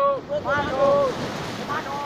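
People's voices calling out in drawn-out calls over a steady rush of wind on the microphone and surf at the shore.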